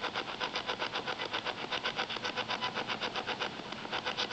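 Spirit box (ghost box) radio sweeping through stations, chopping out a steady run of short static bursts at about eight a second.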